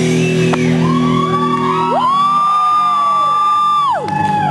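Rock band playing live on stage, loud and steady. About halfway through, a high note slides up and is held, then slides down at the end.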